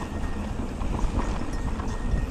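Downhill mountain bike rolling fast over a dry dirt trail: tyres crunching on loose dirt, with a steady stream of small clicks and rattles from the bike.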